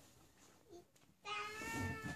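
A child's voice holding one long, steady note, a drawn-out hum or "ooh", starting about a second in.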